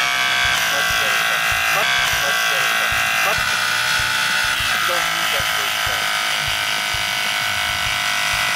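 Battery-powered hydraulic rescue cutter's pump motor running with a steady, even whine as its blades close on a car's steel seat-back frame.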